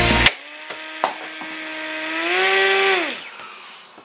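The drum weapon of a 3D-printed antweight drum-spinner combat robot whines at a steady pitch after music cuts off. Its pitch lifts slightly, then winds down until it stops a little over three seconds in. A sharp knock comes about a second in.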